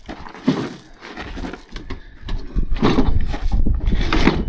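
A heavy wooden crate being shoved along an excavator's deck, scraping and rumbling louder from about a second in, with short grunts of effort from the man pushing it.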